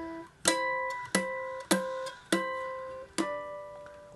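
Enya ukulele playing five single notes, each plucked and left ringing before the next, as natural harmonics at the twelfth fret.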